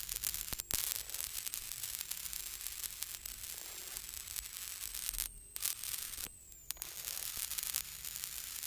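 Rally car intercom feed hissing and crackling, with a thin high whine and two short dropouts about five and six seconds in: the intercom is cutting out and the crew are losing comms.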